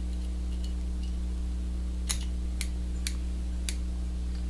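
Small fly-tying scissors snipping off the butt ends of hen feathers tied in at the hook: two faint snips in the first second, then four sharper snips about half a second apart in the second half, over a steady low hum.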